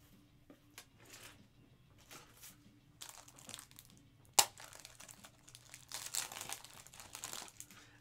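Faint crinkling and rustling of trading-card packaging being handled, with one sharp click a little past four seconds in and a denser stretch of crinkling near the end.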